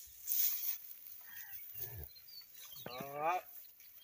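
A bull lowing briefly about three seconds in: a short, low moo that rises and falls in pitch, with a lower grunt a second before it.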